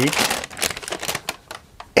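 Paper bag rustling and crinkling as it is picked up and handled: a dense run of small crackles, strongest at first and thinning toward the end.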